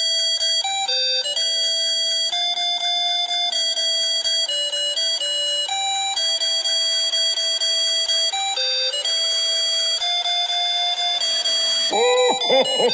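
Christmas intro music: a bell-like synth melody played note by note, with no drums, bass or vocals.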